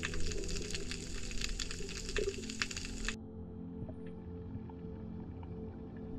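Underwater recording: a dense crackle of clicks over water noise, which stops abruptly about three seconds in, leaving a quieter steady low drone.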